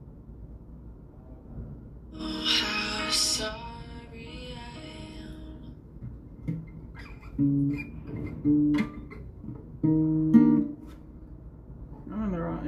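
Acoustic guitar strummed in halting, stop-start chords: a loud strum about two seconds in that rings out, then about four short chords, each cut off, as the player fumbles to find the chords of a song she can't remember.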